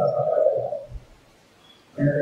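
A man's voice through a microphone holding one drawn-out syllable for under a second, then a pause of about a second with a soft low thump.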